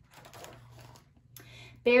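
Paper page of a picture book being turned by hand, a soft rustle with small crackles.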